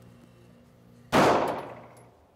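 A single 9mm Glock 17 pistol shot about a second in: one sharp report whose echo dies away over most of a second in an indoor firing range.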